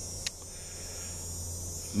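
A steady high-pitched chorus of insects such as crickets, over a low steady hum, with a single click shortly in.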